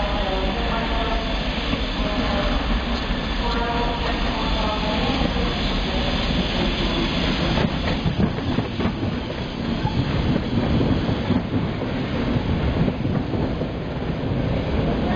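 A steam locomotive and its train of vintage carriages rolling slowly past with a steady rumble, the wheels clicking over rail joints and points from about eight seconds in.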